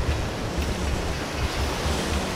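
Ocean surf washing steadily onto the beach, with wind rumbling on the microphone.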